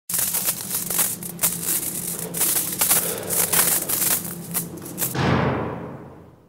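Intro music with a crackling, scratchy texture over a low held drone. A little after five seconds it ends in a deep boom that fades away.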